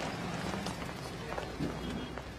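Footsteps of several people walking briskly on a city sidewalk, a scatter of sharp heel and shoe clicks over a steady low hum of street ambience.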